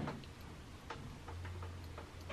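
Several faint, irregular clicks over a low, steady hum.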